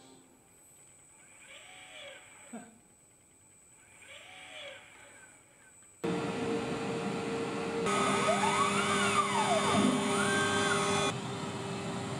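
After a nearly silent start with two faint brief sounds, a CNC router suddenly starts milling balsa wood about halfway through: a loud, steady running noise with a held tone, and the machine's motors whining up and down in pitch as the axes move.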